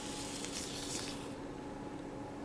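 Sphero Mini robot ball rolling in its cardboard car shell across a paper map: a faint hiss that fades out a little over a second in, as the robot comes to a stop.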